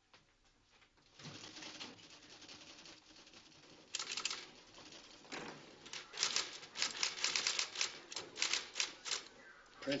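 Typewriter clattering in quick, irregular runs of keystrokes, starting about four seconds in after a stretch of low background noise.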